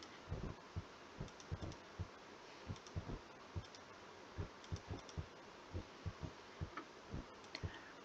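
Faint, dull computer clicks repeated irregularly, about two to three a second, as keys or buttons are pressed over and over to step through a chart.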